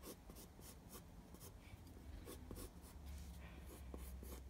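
Faint scratching of a pencil on paper, in quick, repeated short strokes.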